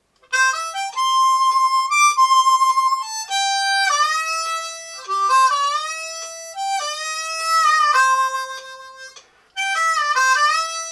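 Diatonic harmonica in F played cross harp in C: a country lick of short triplet runs and held notes, several draw notes bent and scooped up into pitch. A faint metronome clicks steadily underneath, and the playing breaks briefly near the end before starting again.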